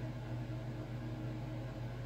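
Steady low hum with a faint hiss underneath: room tone.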